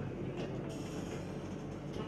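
Steady background room noise: a constant low hum under an even haze, with a few faint brief knocks or rustles.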